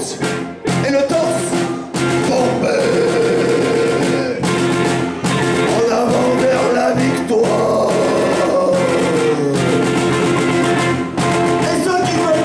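A small rock band playing live, with electric guitar and a drum kit, and a man's voice singing over it.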